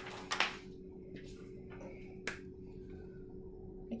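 Paper magazine pages rustling as they are handled, then a single sharp click about two seconds in, over a faint steady hum.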